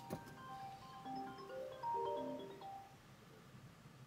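A mobile phone ringtone playing a short tune of mallet-like notes at several pitches for about three seconds, after a click at the start.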